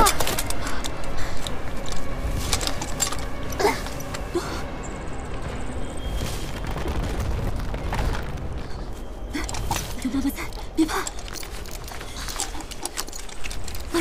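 Monster-movie soundtrack: a dramatic score with many sharp, booming impacts and crashes over a low rumble, and a brief line of a woman's speech about ten seconds in.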